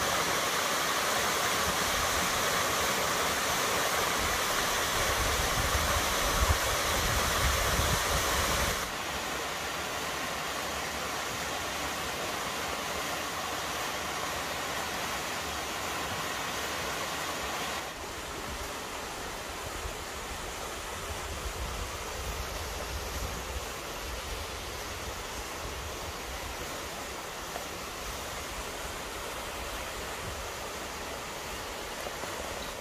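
Waterfall pouring into a plunge pool: a steady rush of falling water. It cuts abruptly to quieter takes of cascading water twice, about a third of the way in and again past halfway.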